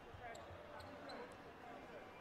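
Quiet arena sound during an injury stoppage: a basketball bouncing a few times on the hardwood court, with faint voices on the floor.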